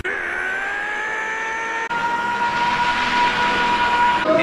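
Anime power-up sound effect: a whining tone that climbs in pitch over the first two seconds and then holds steady, over a hiss.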